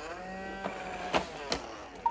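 iRobot Roomba robot vacuum starting its cleaning run: its motors spin up in a rising whine that settles to a steady running pitch. Three short sharp clicks sound over it.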